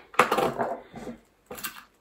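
A small round metal tin of needles and pins being handled and opened, the metal pieces inside clinking and rattling. It comes in two bursts: a longer one at the start and a short one about a second and a half in.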